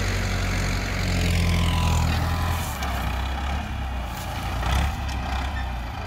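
Ford farm tractor's diesel engine running steadily while it pulls a seven-disc plough through field stubble.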